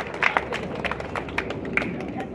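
Scattered hand clapping from a small group, irregular single claps a few times a second, thinning out toward the end.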